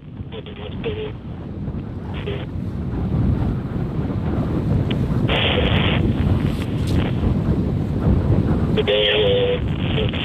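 Low rumbling wind noise on the microphone, building over the first three seconds and then holding steady, with a few short bursts of noise from the launch-control radio feed.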